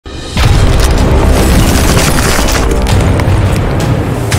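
Cinematic logo-sting sound effect over music: a deep boom hits about a third of a second in, followed by a sustained low rumble punctuated by several sharp impact hits.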